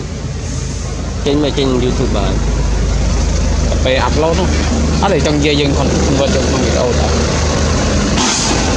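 A steady low engine rumble that comes in about a second in, with intermittent voices over it.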